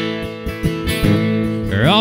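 Acoustic guitars strummed in a slow country song, chords ringing between the sung lines; a voice slides up into singing near the end.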